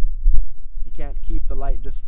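Low, uneven rumble of wind buffeting the microphone, with a man's voice starting about a second in.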